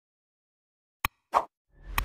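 Button-click sound effects from a like-and-subscribe animation: after a second of silence, a sharp mouse click, then a short pop, then a whoosh with a low rumble building near the end.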